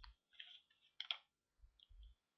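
Near silence with a few faint clicks, two of them close together about a second in.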